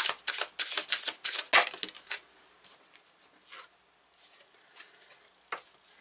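A deck of tarot cards being shuffled by hand: a quick run of card slaps, about six a second, for the first two seconds, then only faint, scattered card handling as a card is drawn.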